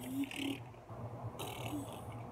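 Rustling of a toddler's curly hair being brushed: one short stroke at the start and another over the last half second, with a few brief low vocal sounds in between.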